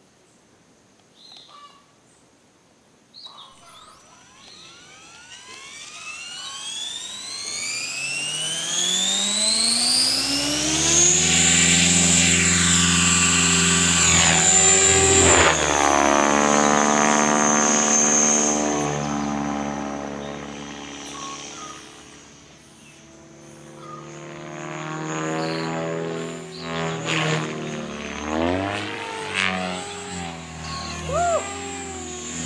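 Align T-Rex 550 radio-controlled helicopter spooling up from rest: a whine that rises steadily in pitch for several seconds, then holds high and loud as it flies. Its pitch drops and its loudness fades and swells again as it passes near and away.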